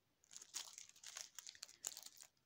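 Plastic packaging crinkling faintly as it is handled, a run of irregular crackles starting about a quarter second in.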